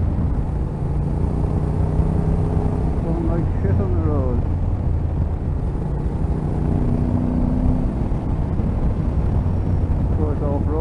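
Yamaha Ténéré 700's parallel-twin engine running steadily at road speed, heard from the rider's position over rushing air.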